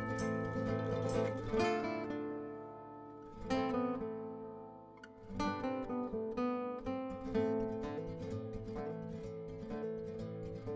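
Background music on a plucked string instrument: chords ring out and fade, then are struck again about three and a half and five and a half seconds in.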